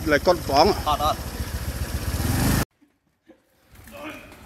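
Motor scooter engine idling steadily, with a man talking over it at first; the engine sound cuts off suddenly about two and a half seconds in, leaving a second of silence before faint background sound returns.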